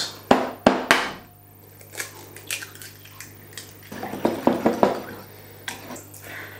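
Eggs cracked on the rim of a small ceramic bowl, three sharp knocks in the first second, then lightly beaten in the bowl, with a run of quick clinks against the bowl near the end.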